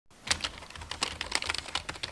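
Computer keyboard being typed on quickly: a fast, irregular run of key clicks.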